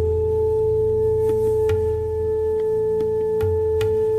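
Bansuri (Indian bamboo flute) holding one long, steady note over a low drone, with faint taps here and there in the backing.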